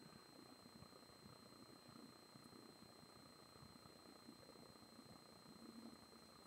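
Near silence: a very faint, slow pour of beer from an aluminium can into a glass, under a steady faint high-pitched electronic whine.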